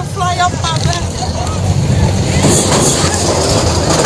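Roller coaster ride heard from on board: a loud, steady rumble of wind buffeting the microphone and the train running along the track, with a rush of noise that swells about two and a half seconds in.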